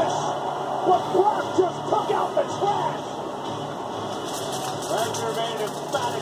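Television audio playing in the room: voices and music from a wrestling broadcast. A plastic bag rustles briefly near the end.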